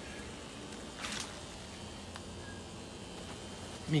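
Quiet, steady outdoor background noise with one brief rustle about a second in.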